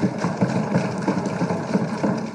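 Many legislators thumping their wooden desks in approval, a dense run of rapid, uneven knocks that swells and then fades near the end.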